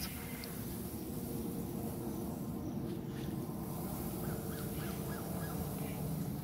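Quiet garden background: a low steady rumble with faint bird calls, a short quick run of them near the end.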